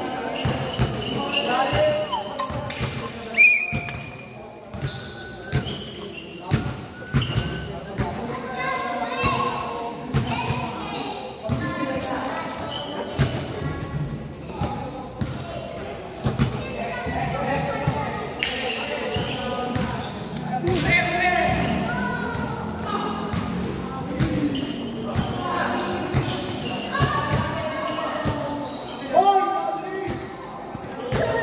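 Basketballs bouncing on a hard court floor, in irregular thuds, amid players' voices in a large, echoing covered hall.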